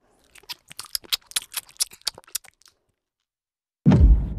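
Cartoon crunching sound effect: a quick, irregular run of crisp crunches lasting about two and a half seconds, then a heavy low thud right at the end.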